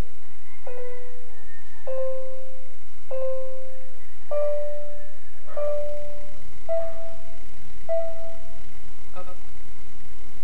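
A keyboard played slowly, one note at a time, about a second apart. Each note is struck twice before the next step up, so the line climbs in pairs through a right-hand five-finger exercise. A short, fuller note sounds near the end.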